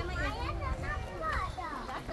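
Several people's voices, children's among them, chattering and calling out over each other, with a low rumble underneath.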